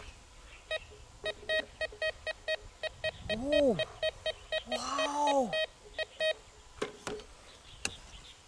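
Metal detector beeping rapidly, about five short beeps a second, as its coil is swept over a freshly dug hole: a target response to metal in the hole. A man's voice lets out two long exclamations over the beeping, and a couple of sharp knocks follow near the end.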